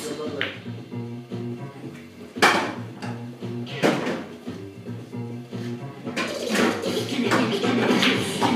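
Background song with a steady bass line playing, with sharp clacks of pool balls striking, the loudest about two and a half and four seconds in.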